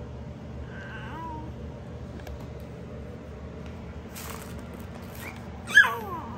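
Two-month-old baby cooing: a soft coo that falls in pitch about a second in, then a short, louder high-pitched squeal near the end.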